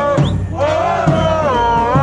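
Soccer supporters singing a chant together in a drawn-out, gliding melody, with a drum thumping a steady beat underneath.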